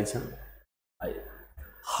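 A man's voice trailing off, then a brief drop to complete silence for under half a second, followed by faint room noise and an audible breath just before he speaks again.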